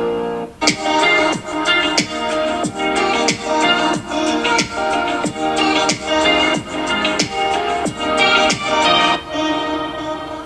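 Upbeat electronic music with a steady kick drum about every two-thirds of a second, played through the iPad Pro 11-inch (2020)'s four built-in speakers as a speaker test; the bass is very clear.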